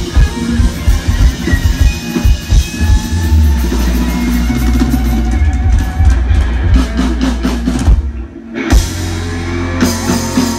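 Live rock band playing loud, with drum kit, guitars and bass. Past the middle the drums play a quick run of hits. The band drops out for about half a second, then crashes back in on a held chord.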